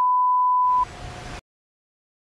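Censor bleep: one steady, high single-pitch beep tone that cuts off just under a second in, followed by a moment of rushing river water before the sound drops out completely.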